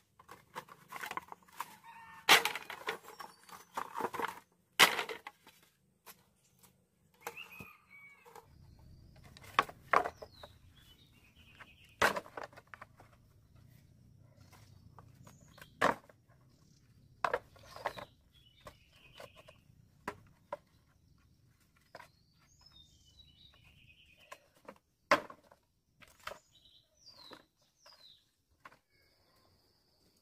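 Chickens clucking, with many sharp knocks and clatters: a quick run of them in the first few seconds, then single knocks every few seconds.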